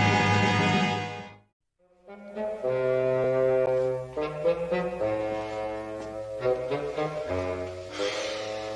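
Orchestral background score: a loud held chord fades out about a second and a half in, a brief silence follows, then a new music cue starts with a mix of held and short notes.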